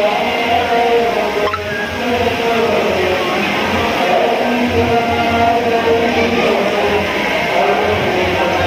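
Music with long held notes over a low, pulsing drum beat.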